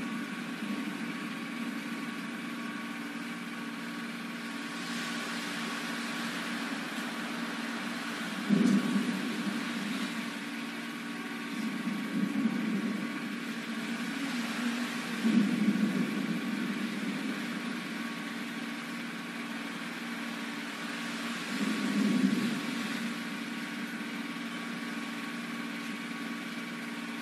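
A steady machine hum, a low drone with fainter steady higher tones above it, swelling louder briefly about four times.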